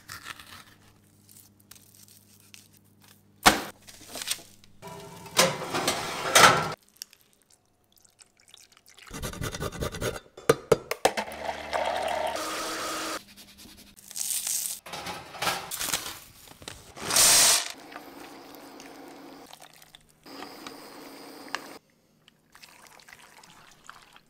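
A series of short kitchen sounds with abrupt cuts between them: a metal spoon scraping seeds out of a raw butternut squash, a blender running on puréed squash in the middle stretch, and a wooden spoon stirring thick, creamy cheese sauce and pasta shells in a pot near the end.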